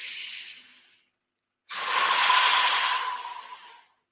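A man breathing in deeply, close on a headset microphone: the in-breath fades out within the first second. After a short pause comes a longer, louder out-breath of about two seconds. This is the deep breath that closes a round of EFT tapping.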